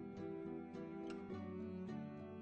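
Quiet background music of gently plucked guitar notes, with a new note about every half second.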